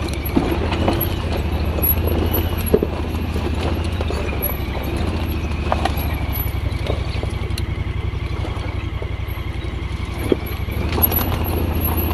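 Honda Pioneer 1000 side-by-side's parallel-twin engine running at low revs as it crawls over a rocky trail, with a steady, slightly wavering high whine over the rumble. Scattered knocks and clunks come as the wheels and chassis go over rocks and roots.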